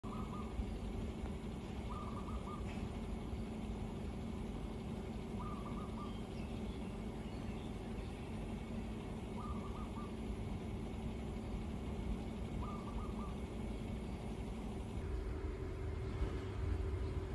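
A bird outdoors giving a short, level call five times, a few seconds apart, over a steady low background rumble.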